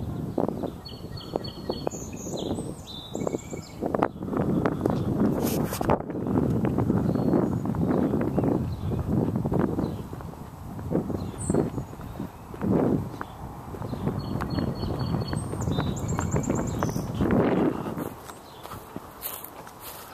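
Footsteps walking across a lawn and into dry leaves and undergrowth: irregular steps with rustling and brushing, heavy on the low end.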